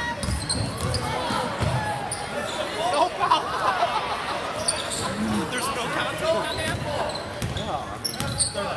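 Basketball dribbled on a hardwood gym floor, a series of low bounces, under spectators' voices in a large gym.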